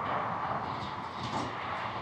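Steady background hum of road traffic, with no single vehicle standing out.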